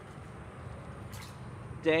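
Low, steady background rumble with a short hiss about a second in, then a man's voice near the end.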